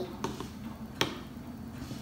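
A single sharp click about a second in, with a fainter tick shortly before it, over quiet room tone.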